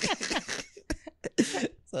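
A person laughing in short breathy bursts that break into a few sharp coughs.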